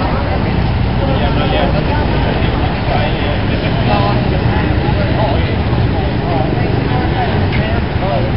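Crowd chatter, many voices talking at once over a steady low rumble.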